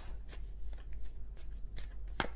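A tarot deck being shuffled by hand: a quick, irregular run of soft card clicks and flutters as the cards slide and tap together.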